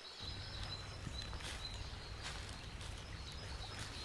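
Faint woodland ambience: a low steady rumble with a thin high tone and a few short high chirps.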